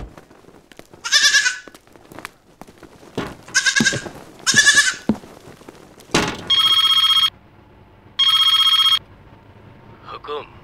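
Goats bleating three times, followed by a telephone ringing twice in short, steady electronic rings.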